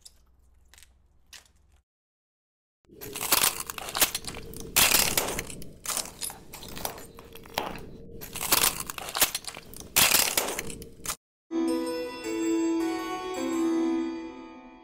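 Fire crackling sound effect: loud, irregular crackles and crunches for about eight seconds, which cut off suddenly. Near the end, slow chiming music begins.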